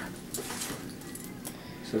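Faint scattered clicks and rustling as a spring-loaded metal caliper gauge is handled against a plastic-wrapped leg.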